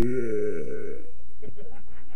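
A man's long, low burp lasting about a second, followed by brief muttered voice sounds.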